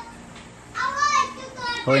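Speech: after a short lull, a higher-pitched voice is heard about a second in, and a man starts talking near the end.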